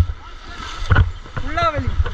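Shallow stream water rushing over rocks, with wind rumbling on the microphone. A sudden knock comes about a second in, and a short drawn-out vocal call rises and falls near the end.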